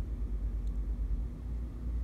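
A steady low background rumble with a faint, even hum over it.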